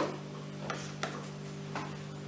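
A hand-held vegetable peeler scraping strips of skin off a raw potato: three short, sharp strokes, with a steady low hum underneath.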